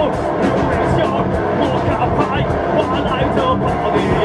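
A rock band playing live and loud: electric guitars, bass and drums, with the singer's vocals on top. The drum and cymbal hits keep a quick, steady beat of about four a second.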